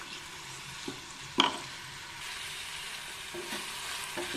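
Chopped onions and tomatoes frying with a steady sizzle in a steel pan while a wooden spatula stirs and scrapes them. One sharp knock of the spatula against the pan comes about a second and a half in.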